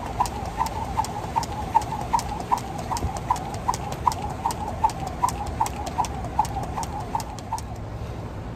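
A person skipping with a jump rope: a steady rhythm of short slaps, about two and a half a second, over a low background rumble. The rhythm stops shortly before the end.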